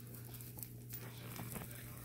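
Quiet room tone with a steady low hum and a few faint, soft taps and rustles from hands handling the puppy and cord on a cloth.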